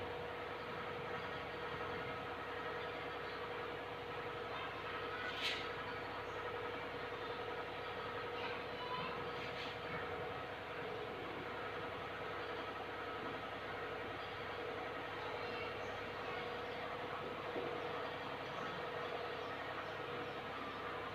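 Steady background hum of room noise, with one sharp click about five and a half seconds in.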